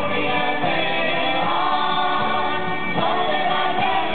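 Several men and women singing a Galician folk song together in unison, backed by a live folk band of harp, guitar, accordion and fiddles. A new sung phrase begins about three seconds in.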